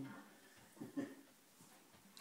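Two faint, short voice sounds close together about a second in, against a quiet room.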